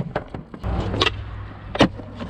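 Skateboard wheels rolling over concrete, a low rumble setting in about half a second in, with three sharp clicks: near the start, about a second in, and near the end.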